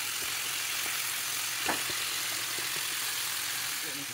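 Cornmeal-battered fish deep-frying in a pot of hot oil: a steady sizzle, with a single light click about halfway through.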